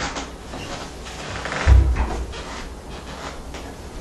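KRUTZ bass being plucked: a run of single notes with deep low fundamentals. The strongest note comes a little under two seconds in and rings out briefly.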